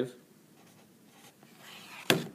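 Faint strokes of a felt-tip marker writing on paper, then a soft rising scrape of the paper sheet being moved near the end.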